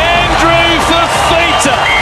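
A television rugby league commentator's excited, high-pitched calling of the play, over crowd noise.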